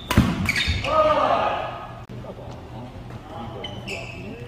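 A badminton racket strikes a shuttlecock sharply just after the start, in a reverberant hall, and a player shouts right after it. Short high shoe squeaks sound on the wooden court near the end.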